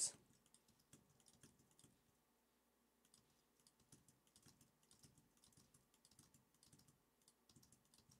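Faint typing on a computer keyboard: scattered quiet keystrokes throughout.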